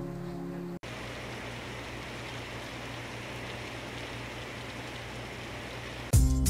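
Background music that cuts off abruptly under a second in, followed by a steady, even hiss with no distinct events.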